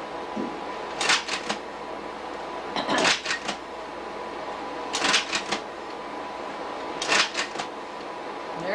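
Slide projector changing slides: a short clatter of several clicks from the slide-change mechanism, repeated four times about two seconds apart.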